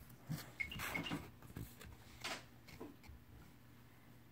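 Faint handling noise: a few soft rustles and light taps, close to the microphone, from the phone and cards moving against bedding.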